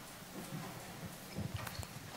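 Faint scattered knocks and soft thumps over quiet room tone, most of them in the second half.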